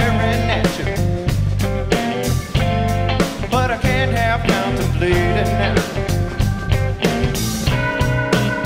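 Live blues-rock band playing: electric guitar lines with bent, wavering notes over bass, drums and keys.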